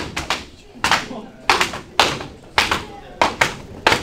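Jiu-jitsu belts lashing the back of a newly promoted student's gi in a belt-whipping gauntlet: sharp cracks in a steady rhythm, roughly one every half second, with voices between them.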